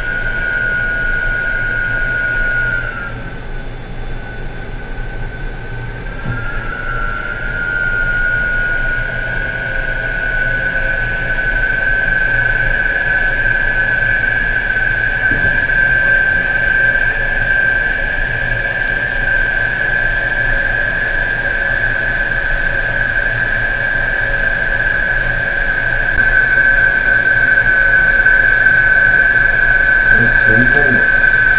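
Offshore platform crane's machinery running with a steady high-pitched whine over a low hum. About three seconds in the whine drops in pitch and fades, then returns a few seconds later and settles slightly higher.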